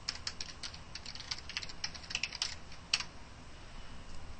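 Computer keyboard typing: a quick, uneven run of keystrokes for about three seconds, ending with a single louder keystroke.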